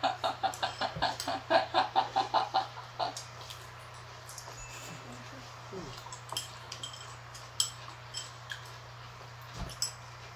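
A woman laughing loudly in a quick run of "ha-ha-ha" for about three seconds. After that come a few light clicks of chopsticks against small bowls over a steady low hum.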